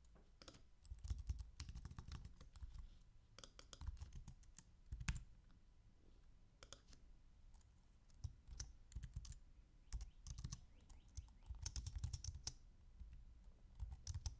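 Faint computer keyboard typing: irregular runs of keystrokes with short pauses between them.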